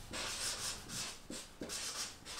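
Felt-tip marker writing on flipchart paper: several short rubbing strokes as a word is written out by hand.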